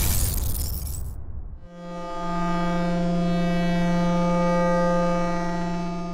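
Sound-effect stinger: a crashing noise that dies away over the first second and a half, then a single held electronic tone, rich in overtones, that swells in and holds steady.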